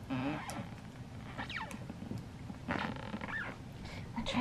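A domestic cat calling three times: a short meow at the start, a quick falling chirp about a second and a half in, and another meow near the end.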